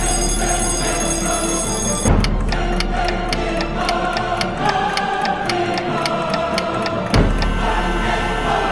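Background music with sustained tones, overlaid from about two seconds in until about seven seconds with a clock-ticking sound effect of about three ticks a second. A steady high ringing sits over the music in the first two seconds, and a hit marks the start and the end of the ticking.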